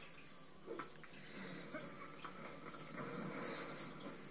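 Cartoon soundtrack from a television: a rushing, noisy sound effect with faint voice sounds, heard through the TV speaker and picked up by a phone microphone.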